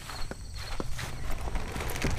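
Footsteps on the ground with a few light, short knocks, over a low rumble of handling or wind noise.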